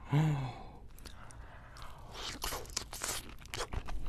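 Close-miked mouth sounds of eating raw seafood dipped in egg yolk: a short voiced hum just after the start, then wet chewing with bursts of sharp crunchy clicks in the second half.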